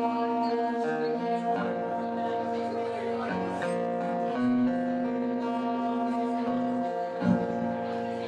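Cutaway acoustic guitar played solo: chords picked and left ringing, changing every second or two, with no voice over them.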